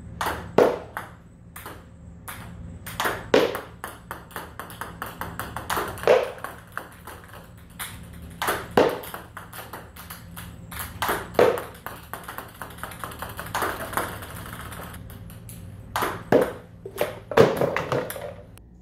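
Table tennis serves struck fast, one after another, about every two and a half seconds: each a cluster of sharp clicks from the ball on the paddle and the table, some striking an empty cardboard box, followed by runs of quickening smaller bounces as the balls bounce away.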